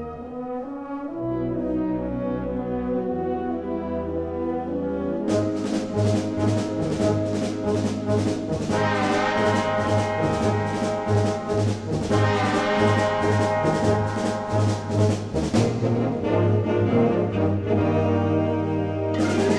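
Military wind band playing, led by brass: sustained low brass chords, then about five seconds in a steady rhythmic beat of short strokes starts under the held brass chords and runs for about ten seconds before the band settles back into sustained chords.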